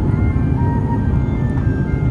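Jet airliner cabin noise from an Airbus A350-900 with Rolls-Royce Trent XWB engines during climb-out after takeoff: a loud, steady low rumble. A soft background music melody plays over it.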